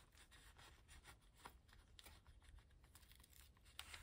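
Near silence, with a few faint soft ticks and paper rustles from sticker sheets being handled with metal tweezers.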